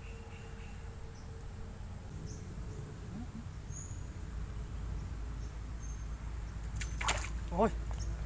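Quiet waterside outdoor ambience with wind rumble on the microphone and a faint steady high insect buzz, while a float on a bamboo fishing pole sits still in the flooded water. About seven seconds in comes a sudden splash and swish as the pole is jerked and a fish is pulled from the water, and a man gives a short exclamation.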